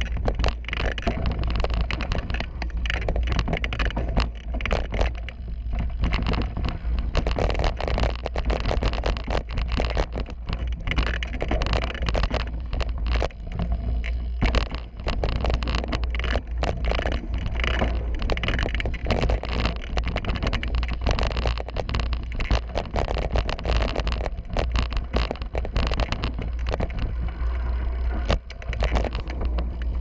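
A YT Capra 27.5 mountain bike descending a rough dirt downhill trail, heard from a GoPro mounted on the bike: constant wind rumble on the microphone, tyres rolling and skidding over dirt and rocks, and frequent rattles and knocks from the chain and frame over bumps.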